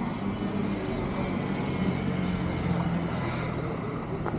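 Street traffic noise: a motor vehicle's engine hums steadily at a low pitch over an even background hiss.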